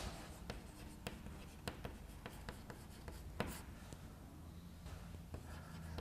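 Chalk writing on a chalkboard: faint, irregular taps and strokes of the chalk as a word is written, with one sharper tap about three and a half seconds in.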